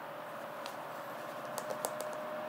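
A few light clicks over a steady hiss: one about two-thirds of a second in, then three in quick succession near the end, with a steady tone coming in at the very end.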